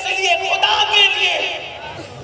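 A man's voice, speaking or reciting in a drawn-out, wavering tone, fading a little near the end.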